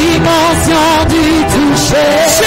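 Worship music: a voice singing a melody with a wavering pitch over held accompaniment notes.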